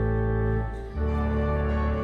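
Organ playing a hymn tune in sustained, held chords, moving to a new chord about a second in after a brief dip.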